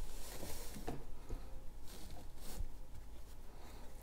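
Polo shirt fabric rustling and swishing in several short strokes as it is slid down over a plastic hooping station, with a couple of faint knocks.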